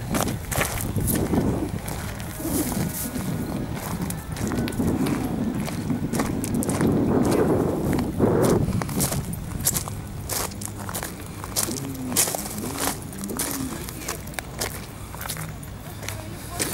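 Footsteps on gravel and stony dirt: a run of irregular crunching steps while walking downhill.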